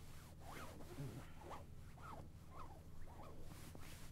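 Faint close-miked scratching or rasping strokes, about two a second, each short stroke sweeping up and down in pitch.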